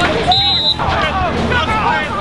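Babble of players' and onlookers' voices on a football practice field, with one short, high whistle blast about a third of a second in.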